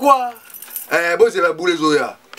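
A man's voice chanting a repeated French phrase in a drawn-out, half-sung delivery, holding its notes.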